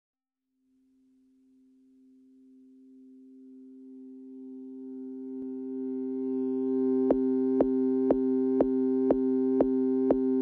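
Opening of a deep house track: a sustained synthesizer chord fades in slowly from silence, and about seven seconds in a steady beat enters at about two beats a second.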